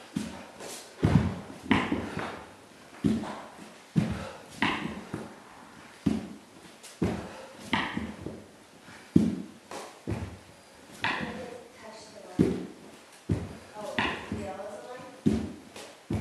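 A person doing burpees on a hardwood floor: repeated thumps of hands and bare feet hitting and landing on the boards, about one a second in an uneven rhythm. Hard breathing comes between the thumps.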